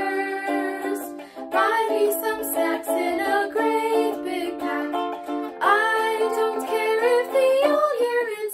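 A young woman singing a melody in held, gliding notes with musical accompaniment, in a small room.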